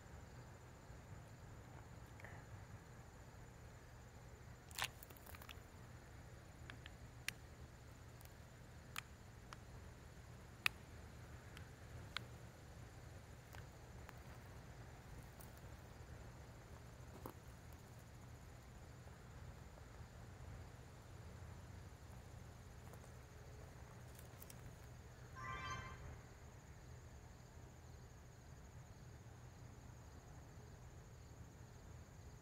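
Near silence with a faint steady low hum, a few small sharp clicks in the first half, and one short pitched chirp about 25 seconds in.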